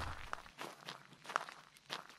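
Footsteps of people walking, a few soft, faint steps.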